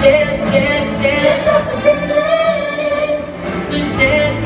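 Show choir and live band with a horn section performing an upbeat pop arrangement, voices singing over sustained band chords.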